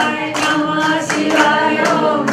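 A group of women singing together in unison, keeping time with hand claps.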